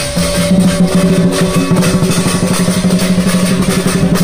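Lion-dance drum and cymbals beating fast and steadily, over a steady low hum.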